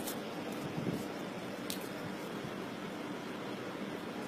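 Steady low background hiss with no speech, broken by one faint click about a second and a half in.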